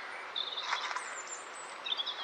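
Birds chirping in the background: a few short, high calls over a faint outdoor hiss.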